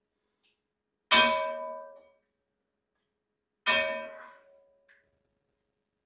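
Two ringing metal clangs from cookware, a stainless pot struck by a metal utensil or lid, about two and a half seconds apart. Each rings out for around a second.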